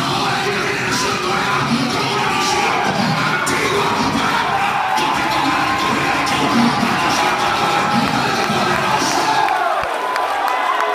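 Congregation shouting and cheering in praise over loud worship music. The music's low end drops out near the end.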